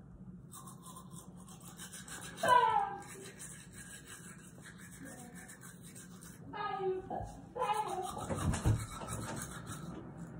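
Manual toothbrush scrubbing teeth in quick back-and-forth strokes, its bristles rasping steadily. Short vocal sounds are made through the brushing about two and a half seconds in and again near the end.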